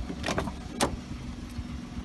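Car rear door latch clicking open: two sharp clicks about half a second apart, the second the louder, over a steady low hum.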